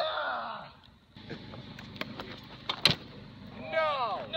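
Laughter, then a few sharp clicks and knocks of a stunt scooter's wheels and deck on asphalt, the loudest a little under three seconds in, and a voice again near the end.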